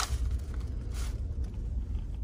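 Low, steady rumble of a Ford pickup truck driving, heard from inside the cab, with a sharp click at the start and a fainter one about a second in.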